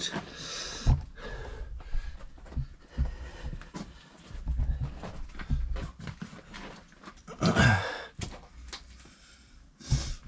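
A caver breathing while moving over rough lava rock, with scattered small knocks and scrapes of rock and gear. A louder breath about seven and a half seconds in is the loudest sound.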